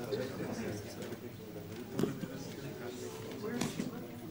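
Indistinct, low conversation of several people, with one sharp click about two seconds in.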